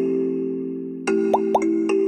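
Upbeat electronic game background music with held chiming notes, thinning out and then picking up again about a second in. Two quick rising blip sound effects come in close succession about a second and a half in.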